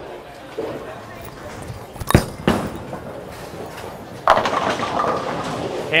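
A bowling ball is set down onto the lane with a sharp thud about two seconds in and rolls down the lane. Roughly two seconds later it crashes into the pins, a loud clattering that lasts over a second.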